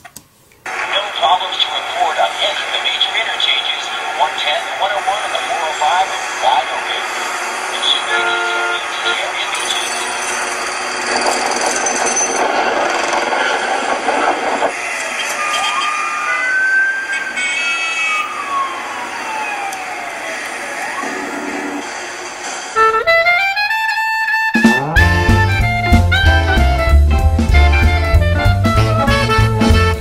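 A dense, jumbled mix of indistinct voices and other sound, with a long sliding tone that rises and then falls past the middle. About three-quarters of the way through, swing-style music with a strong, even low beat comes in.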